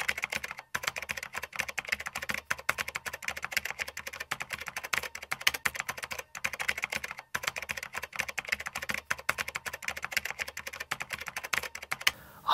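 Computer-keyboard typing sound effect: rapid keystrokes running on without a break except for short pauses about a second in and twice around six to seven seconds in.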